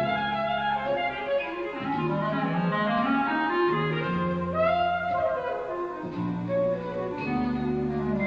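Clarinet playing a lively jazz melody live over bass and drums, with a quick upward run a little past halfway.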